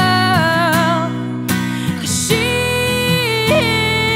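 A woman singing with vibrato over an acoustic guitar. Her phrase ends about a second in, and after a short pause she comes back with a long held note.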